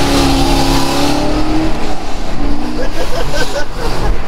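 2010 Chevrolet Corvette's 6.2-litre V8 heard from inside the cabin, pulling under acceleration with its pitch climbing steadily for about a second and a half, then easing off.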